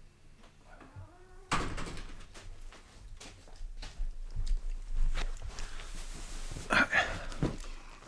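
A room door being pushed shut, with a sudden knock as it closes about a second and a half in, followed by scattered knocks and shuffling as someone moves back.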